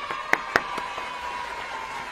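A person clapping his hands, about four claps in the first second, over a faint steady tone.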